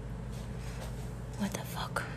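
Quiet room tone with a steady low hum and a few faint, brief soft sounds in the second half.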